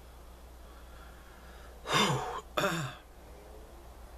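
A man sighs and then clears his throat: two short vocal sounds about two seconds in, each falling in pitch, the first slightly longer and louder.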